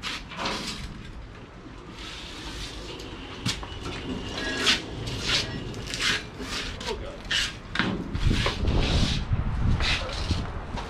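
Clunks, knocks and creaks from a rusty steel hot rod body on a rolling chassis as it is pushed by hand across a concrete garage floor, with a rougher low rumbling of rolling wheels near the end.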